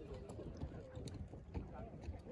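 Faint, distant voices of a group of people calling out, with a few soft knocks or thumps in between.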